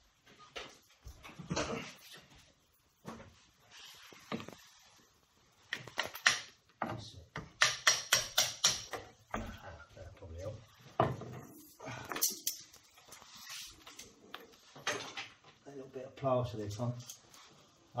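A hand tool scraping and knocking away plaster at the wall, which was holding the stone worktop back from the wall. Irregular scrapes and taps, with a quick run of scraping strokes in the middle.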